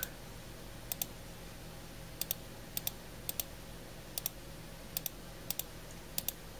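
Computer mouse button clicked seven times in a row, each click a quick press-and-release double tick, irregularly spaced about half a second to a second apart, as tags are deleted one by one.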